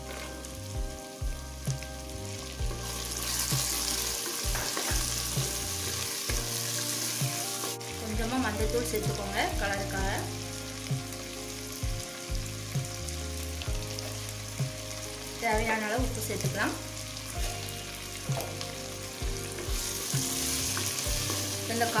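Chopped green beans and vegetables frying with a sizzle in oil in a clay pot, stirred with a wooden spatula that knocks and scrapes against the pot. The sizzle swells a few seconds in and again near the end.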